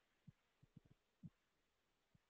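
Near silence between spoken answers, broken by a few faint, short low thumps in the first second and a half.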